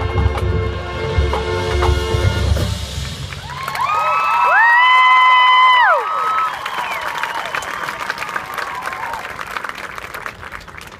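High school marching band playing, building into a loud held chord that swells in about three and a half seconds in and is cut off at about six seconds, after which the crowd in the stands applauds and cheers.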